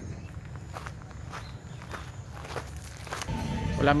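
A few soft, irregular taps like footsteps over a steady low rumble, then a man's voice begins right at the end.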